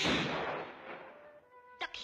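Cartoon shotgun blast sound effect: one sudden loud bang that dies away over about a second. A brief sharp sound effect follows near the end.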